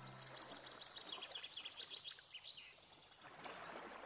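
Faint, rapid, high twinkling chimes, a cartoon sparkle sound effect, thinning out after about two and a half seconds.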